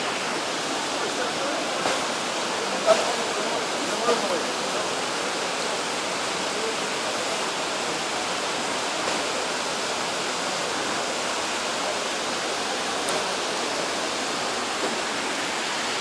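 Steady rushing of falling water from an indoor cascade fountain in a large terminal hall, with faint distant voices now and then.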